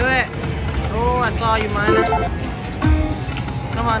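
Dragon Link 'Panda Magic' slot machine's electronic sound effects as the reels spin and stop: several short chime tones that rise and fall in pitch in the first two seconds, and a low thud about three seconds in, over the steady din of a casino floor.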